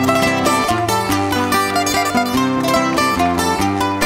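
Canarian folk string ensemble, guitars with a laúd, playing the instrumental interlude of a punto cubano between sung verses. A quick plucked melody runs over the guitar accompaniment.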